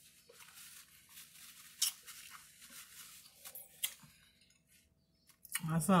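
A person chewing food close to the microphone: faint mouth sounds with small clicks, and a couple of sharper clicks about two and four seconds in.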